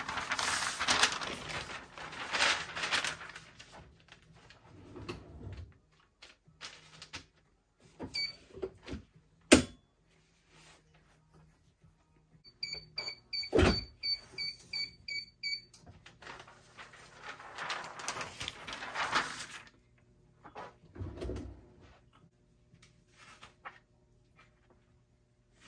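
Paper and shirt fabric rustling as they are smoothed on the platen of a TransPro Select semi-auto heat press, then a sharp click. About halfway through, a run of about nine short electronic beeps sounds, with a heavy thump among them as the press clamps shut. More paper rustling follows.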